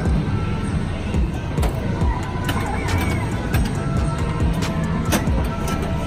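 World Poker Tour pinball machine being played: its music and electronic effects over a dense low arcade din, with sharp clacks of the flippers and ball scattered throughout.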